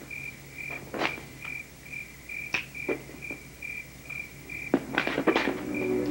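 Crickets chirping in a steady rhythm, about three chirps a second, with a few sharp clicks or snaps over them, clustered near the end.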